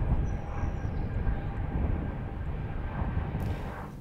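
Small twin-turboprop airliner taking off, its engine noise a steady low rumble that slowly fades.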